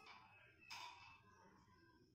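Near silence: faint room tone, with one brief soft hiss-like noise about three quarters of a second in.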